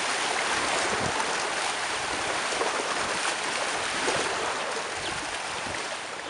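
Small waves lapping and splashing against a rocky lakeshore: a steady watery wash with little irregular splashes, easing slightly near the end.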